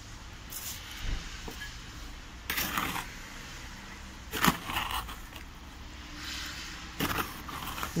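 Hand-mixing of wet cement mortar with marble grit in a plastic bucket: a metal rod and trowel scraping through the mix in a few separate strokes, with one sharp knock against the bucket about halfway through.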